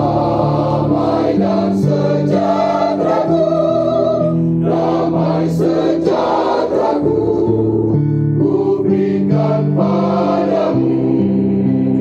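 Mixed choir of men and women singing a Christian song in harmony, accompanied by an electronic keyboard, in phrases of long held chords.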